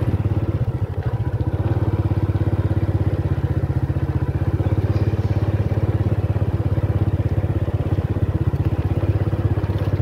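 Small motorcycle engine running steadily under way, a fast, even pulse that holds through the whole stretch.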